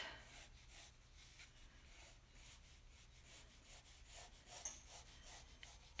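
Faint scratching of a pencil sketching lightly on drawing paper as it traces a large rounded outline.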